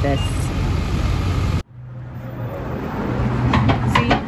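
A motor vehicle engine idling, a steady low rumble, cuts off abruptly about one and a half seconds in. A quieter low hum follows and slowly grows, with faint voices near the end.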